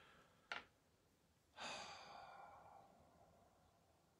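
Faint breath of a man sighing out, lasting about a second and a half and fading away, after a brief soft click about half a second in.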